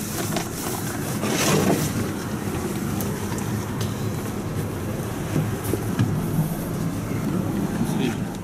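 Steady engine hum inside a vehicle's cabin, with rustling and bumping as a tiger-skin rug is handled and unrolled, and faint voices.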